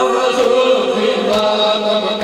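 A noha chanted by a boy's voice through a PA microphone, in long held lines, with sharp slaps about once a second from mourners beating their chests (matam) in time.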